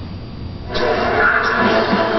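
Music from a television broadcast cutting in suddenly a little under a second in, loud and full, after a low steady hum.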